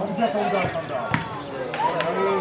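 A few sharp knocks of a football being kicked on the pitch, the loudest just after a second in, among shouting players' voices.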